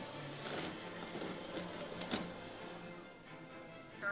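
Background music over the faint whir of the xLean TR1 robot vacuum's drive motors as it moves onto its base station to dock, with a couple of light clicks about half a second and two seconds in.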